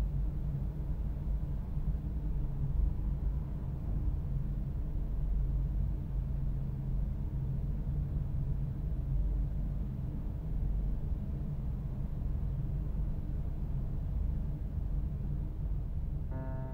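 Steady low rumble of city traffic ambience, even throughout with no distinct events.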